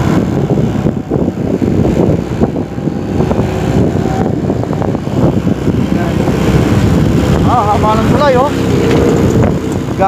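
Wind buffeting the microphone over the steady running of a motorcycle at road speed, heard from the rider's seat.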